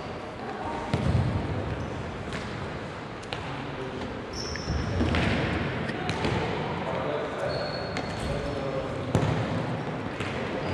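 Futsal game sounds on an indoor court: the ball being kicked and bouncing off the floor several times, with short squeaks of shoes on the court and indistinct players' shouts over the hall's background noise.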